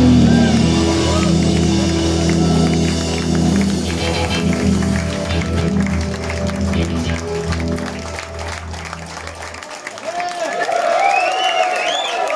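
A live blues band with electric guitar, bass, drums and Hammond organ holds a long final chord that cuts off about ten seconds in. The audience then cheers and applauds.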